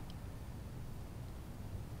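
Quiet outdoor background: a faint, steady low rumble and hiss with no distinct events.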